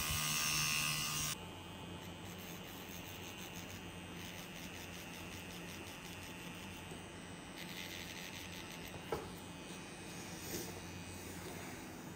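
Pen-style rotary tattoo machine buzzing steadily as it runs on skin. About a second in, the buzz drops to a much quieter steady hum, with a couple of faint clicks later on.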